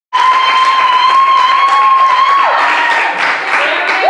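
A small audience clapping and cheering, with one voice holding a long, high cheer that falls away about halfway through.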